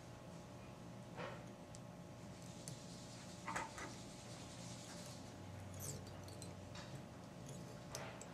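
Faint, brief rustles and ticks of fly-tying thread and dubbing being handled and wrapped on a hook in a vise, a few times over a steady low hum.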